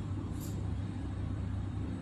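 Steady low hum with a rumble, with one faint brief high click about half a second in.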